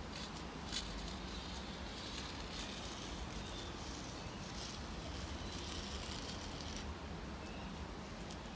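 Chalk scraping across a concrete patio in long sweeps, heard as patches of hiss that come and go, with a few small knocks, over a steady low rumble.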